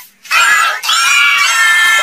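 An electronically pitch-shifted, distorted cartoon voice giving one long, high-pitched shout, starting about a third of a second in.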